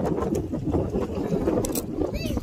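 Wind buffeting a phone's microphone, a loud, uneven low rumble.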